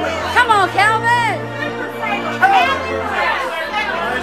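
Several people shouting and chattering excitedly, with high, drawn-out shouts near the start and again midway, over steady music-like tones underneath.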